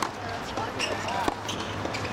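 Tennis balls being struck by rackets and bouncing on a hard court during a rally: a sharp pock right at the start and another about a second and a quarter later.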